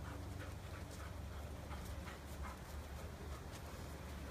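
A dog panting, short breaths repeating a few times a second, over a steady low rumble.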